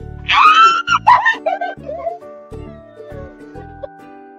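A woman's loud, high-pitched squeal of emotion, in two bursts in the first second and a half and then trailing off, over background music with plucked-string notes and a steady bass beat.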